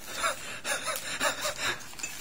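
A person's short breathy gasps, about five quick ones in two seconds, as if stifling a laugh.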